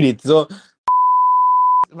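A loud, steady single-pitched censor bleep of about one second, cutting into a man's speech, with a click where it starts and where it stops.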